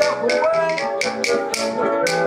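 Banjolele strummed in a quick, even rhythm of bright clicking strokes, about five a second, with a man singing over it.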